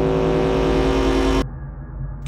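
Electronic sound effect: a loud, steady drone of stacked tones over a hiss, cut off abruptly about one and a half seconds in, leaving a low hum beneath.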